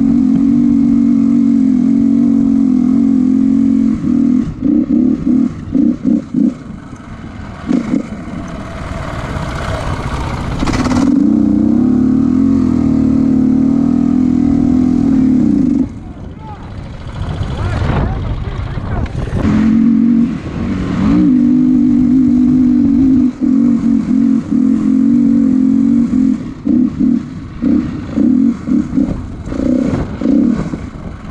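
Motorcycle engine pulling hard at steady high revs while riding over sand dunes, with wind rush. Three times the throttle is chopped on and off in quick blips: about a third of the way in, past the middle, and near the end.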